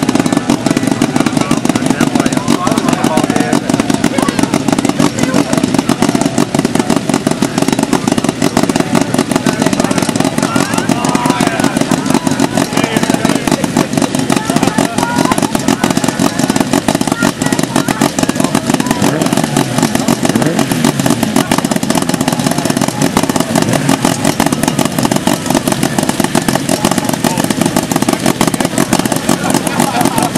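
Autocross car engine running steadily at low revs, a loud, fast, even pulse with no change for the whole stretch, under indistinct voices.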